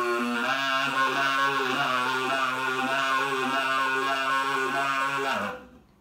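Soprano saxophone fitted with a toy kazoo on its neck, playing a buzzy, kazoo-coloured sound: a steady low note under wavering upper notes. The tone bends down and stops about five and a half seconds in.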